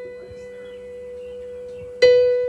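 Electric keyboard holding a sustained chord between phrases, a steady, pure-sounding tone with no new notes struck.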